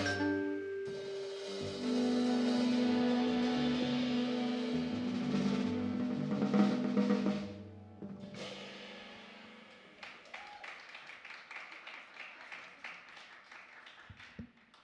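Jazz quintet of vibraphone, soprano saxophone, piano, double bass and drum kit holding a final chord over a drum roll, swelling and then cutting off about eight seconds in: the end of the tune. Faint scattered clicks follow as the sound dies away.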